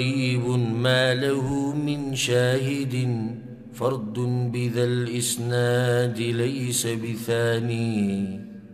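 A man chanting Arabic in a slow, melodic recitation, his voice holding long drawn-out notes with a short break a little before four seconds in.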